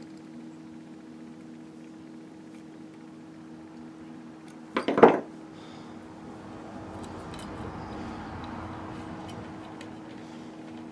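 Light metallic clicks and rubbing as a small piece of brass wire is bent with steel needle-nose pliers and handled against a brass patch box, over a steady electrical hum. A brief voice sound about halfway through is the loudest thing.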